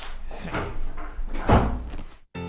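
A run of dull knocks and thuds, roughly two a second, the loudest about one and a half seconds in.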